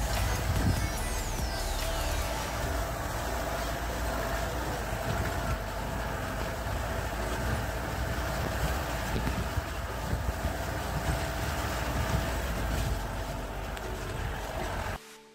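Off-road jeep driving slowly over a rough dirt forest track, its engine running with a steady low rumble.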